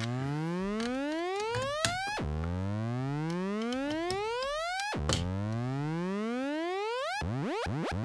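Make Noise Maths cycling envelope used as an audio oscillator, its pitch swept by a second, slower cycling envelope: a bright, buzzy tone that rises slowly for two to three seconds, drops back abruptly and climbs again. About seven seconds in, as the modulation is adjusted, the slow sweeps turn into quick repeated chirps, several a second.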